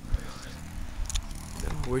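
A man's voice starts to speak near the end, over a low steady rumble with a few soft clicks.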